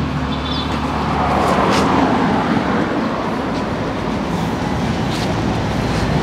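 Road traffic noise: a steady rumble of engines and tyres, swelling as a vehicle passes about a second or two in.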